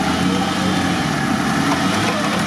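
Off-road 4x4 engine running steadily at low revs while winching through deep mud.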